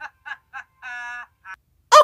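High-pitched, pitch-shifted giggling: a few quick short bursts, then a held note about a second in and one last short burst.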